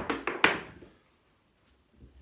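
A pair of dice thrown onto a felt craps table, clattering and knocking against the table wall in a quick run of clicks for about half a second before they settle.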